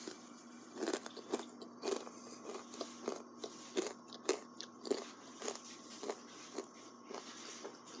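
Crunchy buffalo-flavoured pretzels being chewed right at the microphone, a crisp crunch about twice a second.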